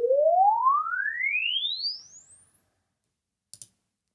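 A sine sweep played through a square guitar speaker cabinet as a frequency-response measurement signal. It is a single pure tone rising steadily in pitch from low to very high, fading away about two seconds in as it climbs past the speaker's top end.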